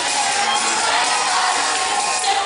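Tropipop band playing live, with the crowd cheering over the music; the sound is dense and steady, with little bass.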